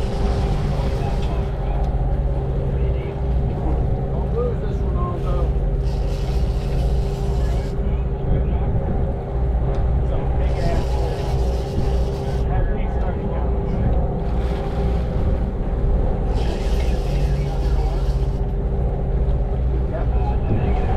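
Sportfishing boat's engines running steadily at low trolling speed, a constant drone with a steady hum, with hiss from wind and water rising and falling every few seconds.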